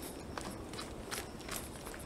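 Footsteps of a walker on a stony, dirt forest trail: a string of short, sharp, irregular steps over a low background hiss.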